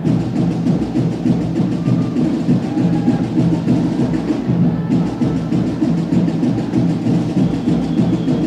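Marching band drumline playing a fast, steady percussion cadence of rapid drum strokes.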